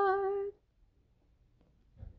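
A single unaccompanied singing voice holds a steady, slightly wavering note of a hymn that ends about half a second in, followed by near silence.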